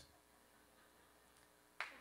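Near silence, broken near the end by one short, sharp click.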